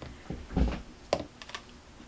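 Craft supplies handled on a tabletop: a roll of tape set down and a plastic glue bottle picked up. A soft thump comes about half a second in and a sharp click about a second in, with a few fainter ticks.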